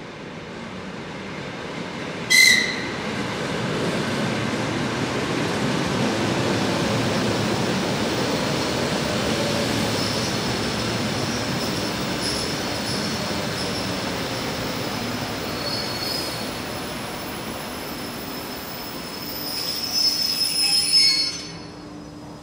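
ED4M electric multiple unit running past the platform: steady wheel-and-motor rumble that swells and then eases, with high wheel squeal that grows stronger near the end. A short, high toot of the train's whistle sounds about two seconds in.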